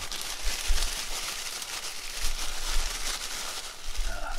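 A clear plastic zipper bag crinkling and folded paper slips rustling as a hand rummages through them, a continuous crackly rustle.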